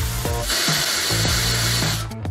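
Fire extinguisher discharging: a steady hiss of spray that starts about half a second in.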